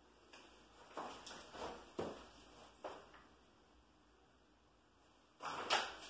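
A paintbrush dabbing paint onto a wall in a few faint, soft strokes, then a louder brushing scrape near the end.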